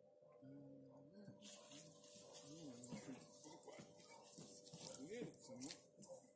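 Faint, distant voices talking over near silence, with a faint steady hum underneath.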